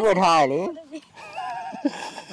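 A person laughing, a loud laugh whose pitch wavers quickly up and down like a whinny, dying away about half a second in, then a quieter, steadier vocal sound.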